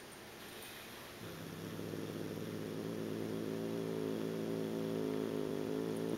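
Domestic cat growling: a low, steady rumble that starts about a second in and slowly grows louder.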